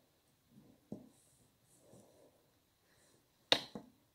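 Faint handling of a hairpin lace loom and crochet hook, then about three and a half seconds in two sharp clicks as the loom's bamboo rods and frame knock while it is turned over.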